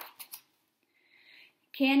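Paper rustle of a picture-book page being turned, fading out with a couple of small ticks in the first half-second. A faint hiss follows, then a woman starts reading aloud near the end.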